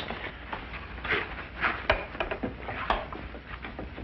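Framed pictures being handled and taken apart: a run of irregular wooden knocks, bumps and scrapes, with two sharper knocks about two and three seconds in.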